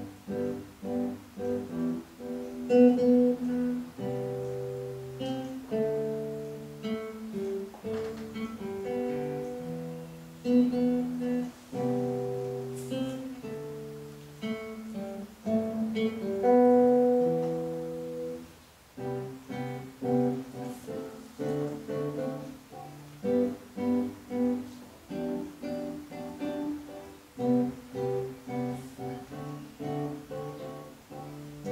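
Solo acoustic guitar played fingerstyle: plucked notes and chords, with quick repeated figures at first, slower ringing notes in the middle, a brief pause about two-thirds of the way in, then the quick plucked pattern again.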